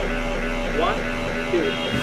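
A man counting "one, two" over a steady low hum.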